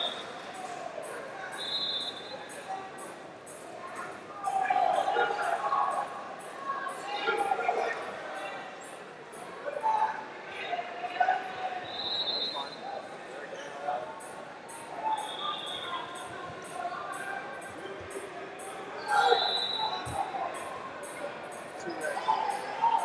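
Wrestling shoes squeaking on the mat in short high squeaks, five times, between indistinct voices calling out in a large echoing hall.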